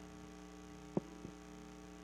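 Steady electrical mains hum from the church sound system during a pause in speech, with a brief short blip about a second in.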